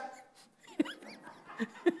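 A few faint, brief, high-pitched vocal sounds, short squeaks and breaths scattered through a pause in speech.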